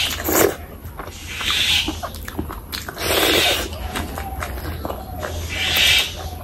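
Close-miked eating sounds of a handful of curry and rice: wet chewing and smacking with small clicks, and four louder hissing, sucking bursts about a second and a half apart.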